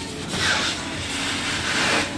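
Truck-mounted carpet-cleaning wand spraying and extracting on carpet: a steady hiss of suction and water spray that swells about half a second in and again near the end.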